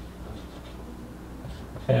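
Felt-tip marker writing on a whiteboard: faint short strokes as a symbol and letter are written. A man's voice starts near the end.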